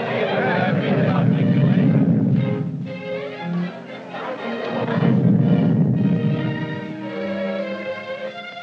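Orchestral film score with two swelling low rumbles over it, the first right at the start and lasting a couple of seconds, the second about five seconds in.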